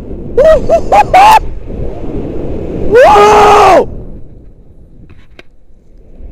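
A man yelling while swinging on a rope-jump rope: a few short rising cries about half a second in, then one long, very loud held yell about three seconds in. Wind rushes on the microphone under it and dies away in the second half.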